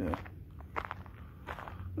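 Footsteps walking on a packed dirt trail: a run of irregular steps.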